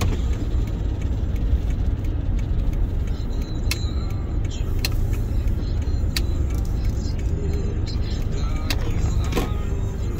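Steady low rumble of a car driving at low speed, heard from inside the cabin, with a few short sharp clicks scattered through it.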